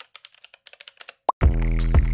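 Channel intro sting: a quick patter of computer-keyboard typing clicks, then, about one and a half seconds in, electronic music with a steady bass and beat starts.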